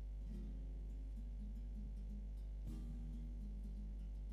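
Faint plucked-string music from a Cádiz carnival coro's instrumental ensemble. A phrase comes in just after the start and a stronger one a little before three seconds. A steady low electrical hum lies under it all and is the loudest sound.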